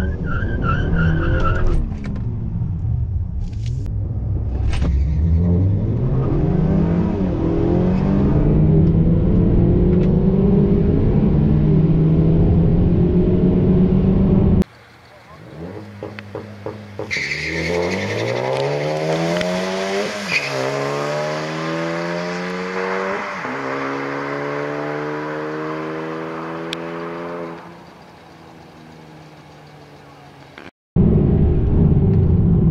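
Two turbocharged 2.0-litre four-cylinder cars, a Ford Focus ST and a Honda Accord Sport 2.0T, on a drag run. In the first half the engine is heard loud from inside the Accord, its revs falling and then climbing and holding. After a sudden cut, the cars are heard from trackside accelerating hard down the strip, the revs climbing with two upshifts before the sound fades away.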